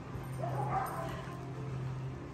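A small dog gives a short pitched vocal sound, rising at the start and lasting under a second, about half a second in, while play-wrestling with another dog. A steady low hum runs underneath.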